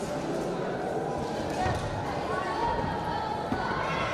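Indistinct voices echoing in a large sports hall, with a sharp thud about three and a half seconds in.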